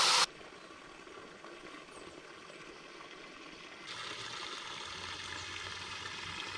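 Water rushing from a burst fire hydrant, cut off abruptly a fraction of a second in, followed by faint steady outdoor background noise that grows slightly louder, with a low hum, about four seconds in.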